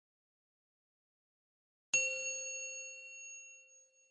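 A single bell-like ding, struck about two seconds in and ringing out, fading away over the next two seconds.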